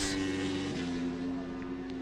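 Racing superbike engine at high revs, a steady engine note that steps slightly lower in pitch about three-quarters of a second in.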